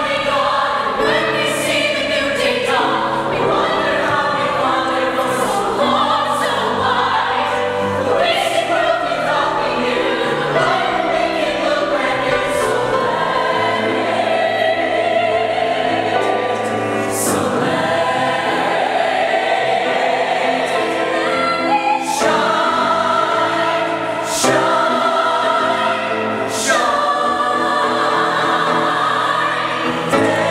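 Mixed show choir of male and female voices singing a musical-theatre song in harmony, at a steady full volume.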